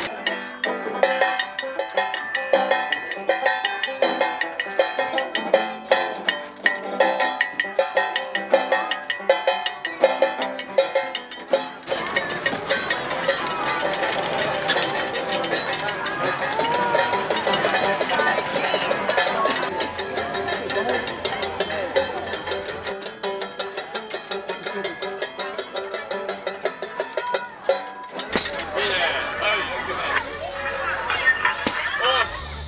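Banjo played along with a tin can beaten with a drumstick in a quick, even beat, with people talking over the music.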